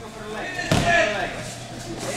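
Two judoka falling onto the judo mat in a takedown: one heavy thud about three-quarters of a second in.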